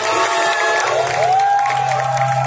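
Live band music at the close of a song: a steady low bass note under sustained higher notes, with one note sliding up into a long held high note about a second in.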